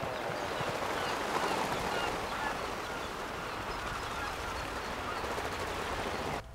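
Seabird colony: many birds calling at once, short overlapping calls over a steady rushing hiss.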